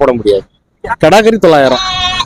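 Young goats bleating, several short calls in a row.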